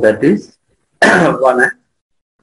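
A man's voice: a short spoken sound at the start, then about a second in a loud clearing of the throat that runs into voice.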